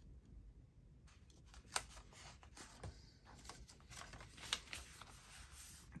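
Faint paper handling: starting about a second in, irregular rustling and crinkling of paper as a small tab is pressed onto a notebook page and the pages are moved, with a couple of sharp clicks.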